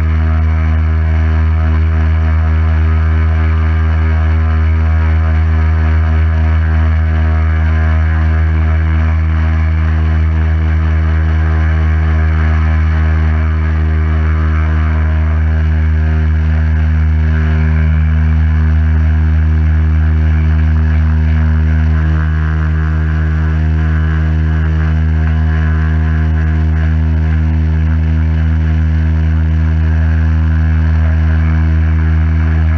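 Pressure washer running steadily under load, a constant motor hum with the hiss of the water jet from the lance spraying onto the car's panels.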